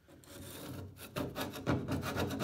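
Hand scraping of old seal material off the fiberglass lip of a Volkswagen Vanagon Westfalia pop top. It starts as a soft scrape, then about a second in settles into a rapid run of short scraping strokes.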